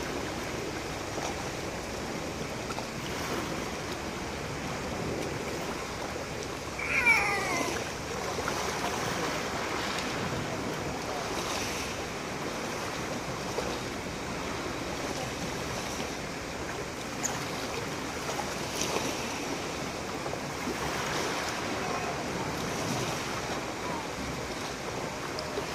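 Small waves washing onto a pebble beach, a steady wash of surf. About seven seconds in, a brief cry falling in pitch stands out as the loudest sound.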